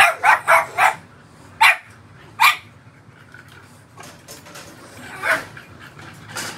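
An American bully barking: four quick sharp barks in a row, two more spaced barks, then a fainter one near the end.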